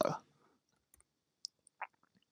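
Two faint computer keyboard key clicks, a fraction of a second apart, about one and a half seconds in.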